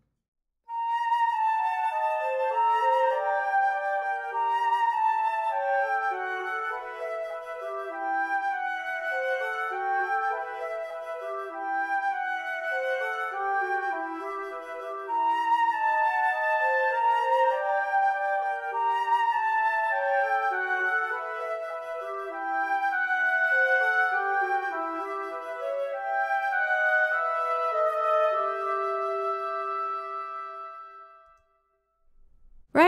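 Orchestral mockup of sampled woodwinds playing: a flute melody with clarinets weaving an arpeggio that answers it, the parts interlocking. The music starts about a second in and closes on a held note.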